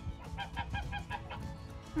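Poultry calling: a quick run of about eight short calls in a little over a second, starting just after the beginning.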